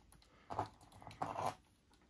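Faint handling noise of a white plastic LiPo balance-lead plug and its wires pressed against a charger's keyed balance port, in two soft bursts about half a second in and again after a second. The keyed plug is being tried the wrong way round and does not go in.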